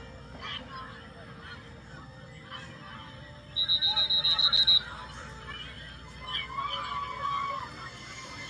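A referee's whistle trilling for just over a second, about halfway through, from a youth football game playing on a phone. Faint voices and crowd sound run underneath.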